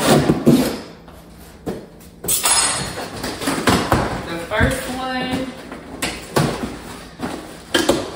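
Cardboard shipping box being cut open and pulled apart by hand, with rustling of the cardboard flaps and a series of short knocks and scrapes.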